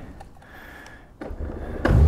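Honda Gold Wing's flat-six engine being started. A low rumble builds about a second in, there is a sharp catch near the end, and it settles into a steady low idle.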